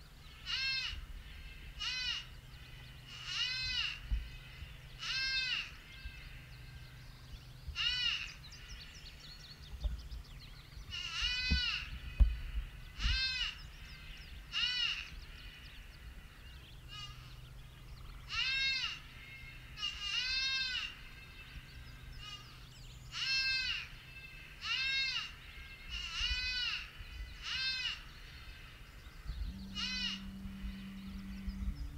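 Predator call playing an animal distress bleat: a long run of short, high-pitched cries, each rising then falling, repeated every second or two with brief pauses.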